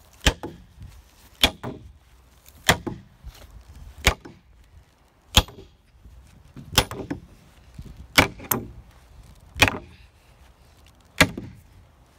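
Hammer driving a long nail into a wooden timber: about ten sharp single blows, roughly one every second and a half, with a quick double blow a little past the middle.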